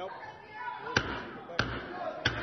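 Wooden gavel struck twice on the rostrum, about a second in and again half a second later, calling the chamber to order over a background of voices.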